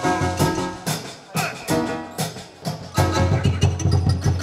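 Live band playing a maloya-style fusion groove on congas and other hand drums, acoustic guitar, drum kit and keyboards. From about a second in, the band drops to a few sharp accented hits, then the full groove comes back in near the end.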